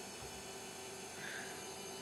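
Faint steady hum and hiss from a running bench instrument, the HP 1660C logic analyzer, with no other events.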